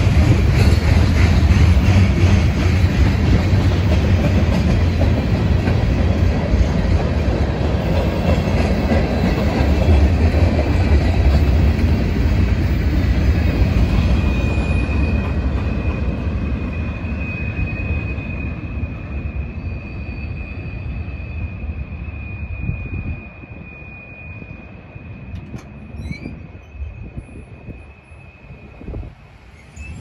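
Freight train of covered hoppers and tank cars rolling past, a loud rumble and clatter of wheels on rail that fades as the end of the train moves away, dropping off sharply about three-quarters of the way through. From about halfway in, a steady high wheel squeal rings over it.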